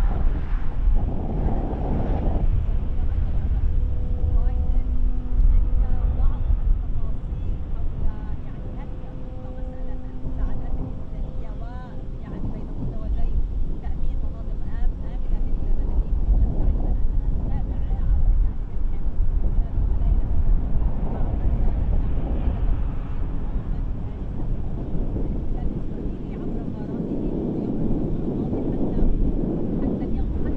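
Outdoor live-camera ambience: a continuous low rumble with wind on the microphone, and a steady hum for several seconds near the start.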